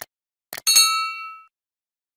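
Subscribe-button animation sound effect: a click at the start and another about half a second in, then a bright bell ding that rings out and fades over about a second.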